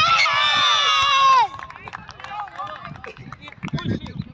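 A loud, high-pitched shout of cheering from the sideline, held for about a second and a half and falling off at the end, then fainter scattered voices and a few small knocks.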